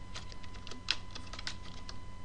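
Computer keyboard keys tapped in a loose, irregular run of single keystrokes, as numbers are typed in.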